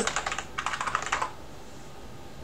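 Typing on a computer keyboard: a quick run of keystrokes, finishing a terminal command, that stops a little over a second in.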